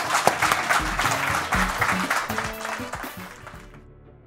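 Audience applauding, with music playing underneath; the clapping and music fade away near the end.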